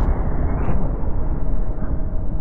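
Deep, steady rumble with a fading hiss on top, a cinematic boom-style sound effect. A faint steady tone comes in about halfway through.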